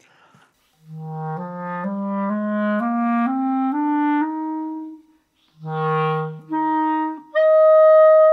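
Clarinet playing a one-octave rising scale of about eight notes, then after a short pause a low note followed by the same note one and two octaves higher, the top note held and loudest. It is a tuning test of a new clarinet mouthpiece across a scale and across octaves.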